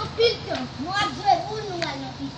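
Young children's voices, high-pitched and rising and falling in pitch, calling out as they play.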